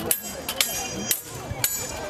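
Steel longswords clashing in a staged fight, about four sharp blade-on-blade strikes roughly half a second apart, some leaving a brief metallic ring.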